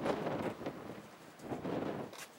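Gusty wind buffeting the microphone, swelling twice and dropping back in between.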